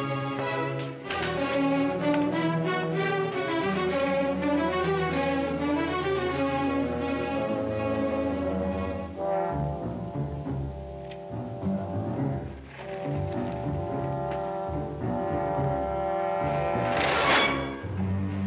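Orchestral film score with brass and strings: busy moving lines for about nine seconds, then quieter held chords. A brief loud burst of sound near the end.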